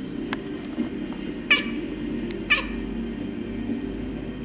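Domestic cat giving two short, high chirps about a second apart, each dropping quickly in pitch.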